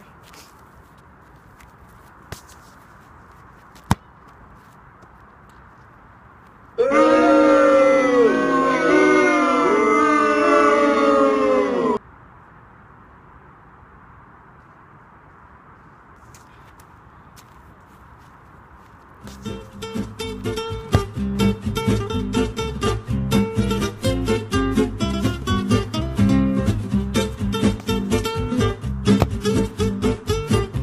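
Faint steady outdoor background with a few sharp knocks in the first four seconds. Then a loud, edited-in five-second burst of pitched sound whose pitch bends and falls away at the end. From about two-thirds of the way in, background acoustic guitar music with a steady strummed rhythm.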